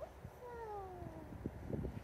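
A cat meowing once: a single drawn-out call that rises briefly, then slides down in pitch for about a second.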